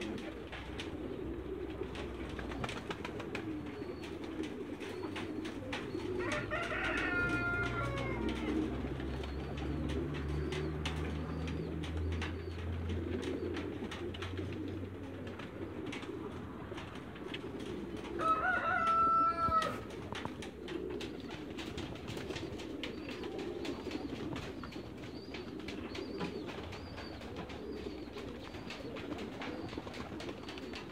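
Farmyard birds: a steady low cooing throughout, with two louder crowing calls, one about a quarter of the way in and a longer one past the middle. A low hum runs under the first half.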